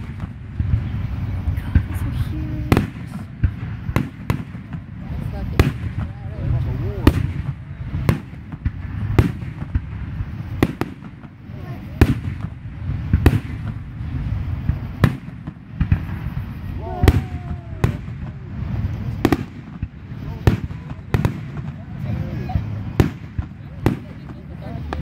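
Aerial fireworks exploding one after another, a sharp bang every half second to a second, over a continuous low rumble.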